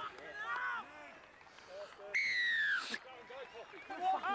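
Referee's whistle: one blast of just under a second that drops slightly in pitch, marking a try scored beside the posts. Players shouting around it.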